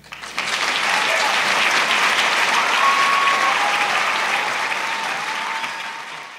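Audience applauding: the clapping swells up at once, holds steady, and tapers off near the end.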